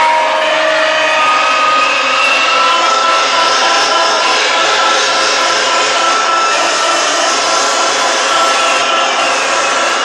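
Loud electronic dance music from a club sound system, distorted by the phone's microphone, with a pulsing beat and long held synth tones.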